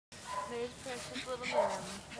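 Puppies giving short high yips and whimpers as they play, with a woman's voice calling over them.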